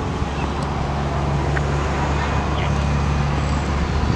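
A motor vehicle's engine running steadily, a low hum that grows a little louder about half a second in and then holds.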